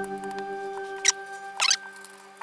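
Background music fading out on held notes, over a screwdriver turning screws out of a plastic housing: a sharp click about halfway through and a short squeak a little later.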